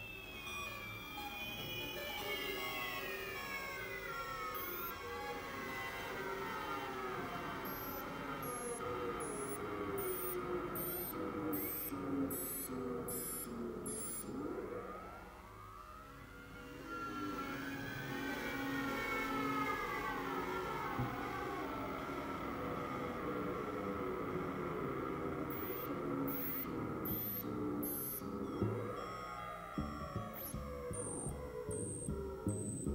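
Synthesizer solo of swooping pitch glides over held tones. Long falling sweeps come first, the sound thins briefly about halfway, and then rising-and-falling arcs return.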